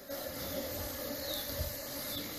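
Steady hissing background noise with a faint, even hum underneath.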